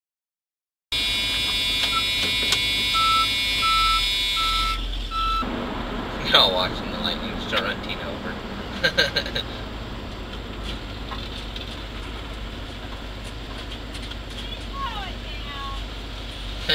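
Inside a fire department vehicle's cab: four short electronic beeps over a steady high whine, then engine and road noise with brief snatches of two-way radio chatter.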